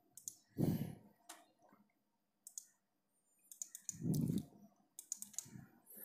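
A few scattered computer mouse clicks, with two louder soft, low thuds, one about a second in and one near four seconds in.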